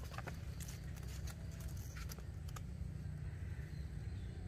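Faint handling sounds of a cloth tape measure being wrapped around a tree's root base: soft rustling with a few light ticks in the first half, over a low steady background rumble.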